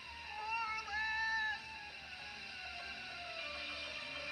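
A children's cartoon soundtrack playing from a television, heard through its speaker: background music with a short, high, wavering call about a second in, then a slow falling tone.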